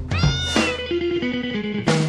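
Cartoon TV-show intro jingle: a short meow from a cartoon cat near the start, then a few plucked notes stepping downward to close the tune.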